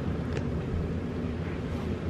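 Steady low background rumble in the room, with one faint click about half a second in.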